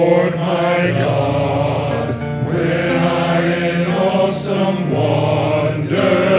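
A men's chorus singing, led by soloists at microphones in front of the choir; the voices hold long, drawn-out notes.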